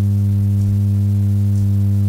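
Loud, steady electrical hum with a buzzing edge from the church's sound system: one low, unchanging pitch with a ladder of overtones, typical of a ground-loop mains hum through a PA.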